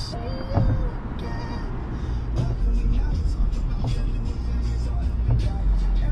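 Music with a deep, heavy bass and a steady beat of drum hits, with a brief vocal phrase near the start.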